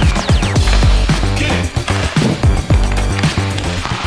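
Background music with a steady beat, heavy bass and repeated falling pitch sweeps.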